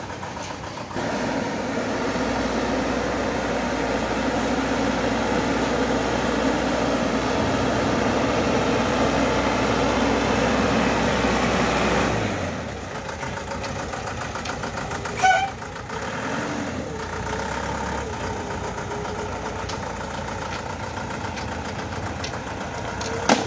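Thaco Forland diesel dump truck loaded with bricks, its engine running as it drives slowly, louder for the first half and then dropping to a quieter, steady note. A brief sharp sound cuts in once, a few seconds after the drop.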